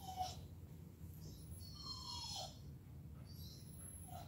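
Dog whining faintly while held in a sit-stay: a few short, falling high-pitched whines, the longest about two seconds in.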